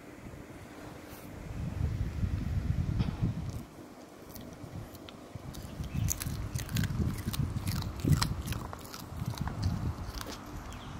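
A small dog biting and chewing crisp bacon taken from the fingers, with a run of sharp crunching clicks in the second half. A low rumbling rustle comes a couple of seconds in.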